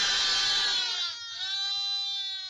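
Sheep bleating: one loud, long bleat lasting about a second, then a second bleat near the end.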